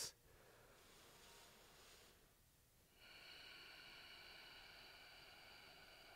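Near silence: a faint breath-like hiss for the first couple of seconds, then, from about halfway, a faint steady high hum made of several tones.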